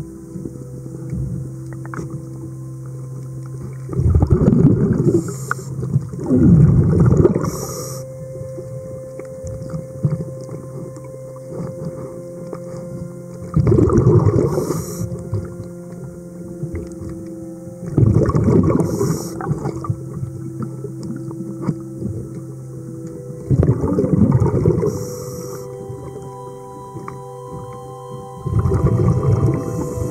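Scuba diver breathing through a regulator underwater: a loud bubbling rush of exhaled air every four to five seconds, with quieter stretches between, over a steady low hum of several tones.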